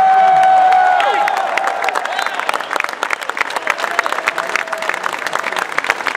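Audience applauding, a dense patter of many hands clapping, with one long held shout of approval from a single voice in the first second or so.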